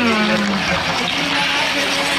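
Clear plastic pouch of fish crisps crinkling and rustling as gloved hands pull it open, after a short hummed "hmm" at the start.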